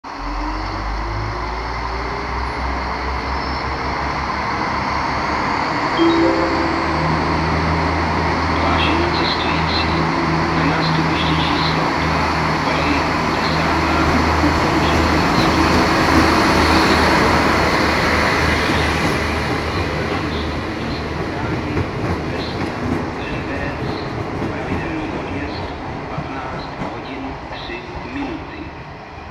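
Passenger train pulling out and passing close by: a steady engine drone under power, with wheels clicking over rail joints. It grows louder as the train goes past, then fades as it moves away.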